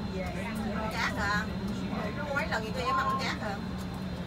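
A bus engine runs with a steady low drone, heard from inside the cabin, while passengers talk over it.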